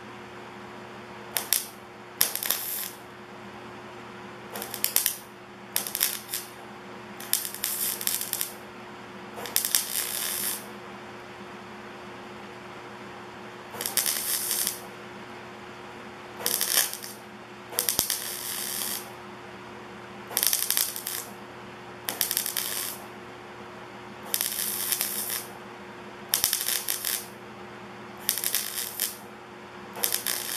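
MIG welder tack-welding a thin steel coffee can: about fifteen short bursts of arc crackle, each under about a second, with pauses between. A steady hum runs underneath.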